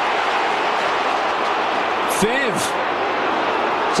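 Large stadium football crowd cheering steadily after a tackle, with one short voice a little past halfway.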